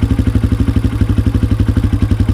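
Motorcycle engine idling loudly with a fast, very even beat of about thirteen pulses a second.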